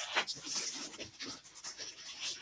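Red 260 latex modelling balloons rubbing and squeaking as they are twisted and bent into a loop, in short irregular bursts.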